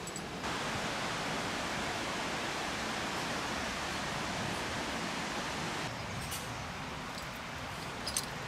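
Steady rushing of water from a mountain stream and waterfall. It is a step louder between about half a second and six seconds in, with a few faint ticks near the end.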